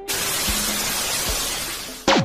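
A sudden crashing burst of noise like shattering glass, a transition sound effect that thins out over about two seconds. Music with a faint low beat plays under it.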